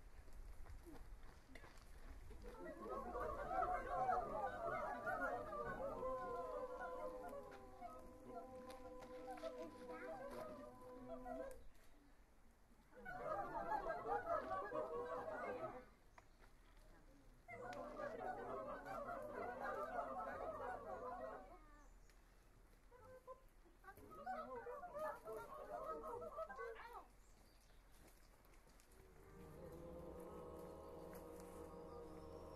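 A community choir of about thirty voices improvising a dense mass of unconventional, animal-like vocal sounds on a conductor's cues, rather than ordinary singing. It comes in four bursts with short quiet gaps, several of them cut off sharply. In the first and longest burst, a couple of steady held notes sound through the chatter.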